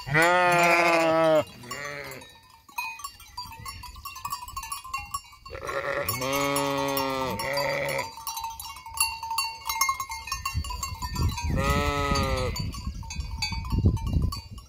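Flock of sheep bleating: about five wavering bleats in three bouts, a loud long one followed by a short one at the start, another long-and-short pair about halfway, and one more near the end.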